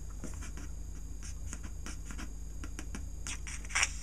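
Pencil tip rubbing a Letraset dry-transfer letter down through the backing sheet onto a paper meter scale: a run of short scratchy strokes, with a louder flurry near the end.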